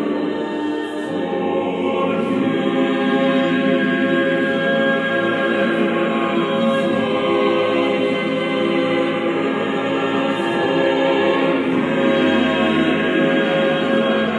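Mixed choir in eight parts singing the repeated words "Father, forgive them" in slow, sustained chords, growing louder toward the end.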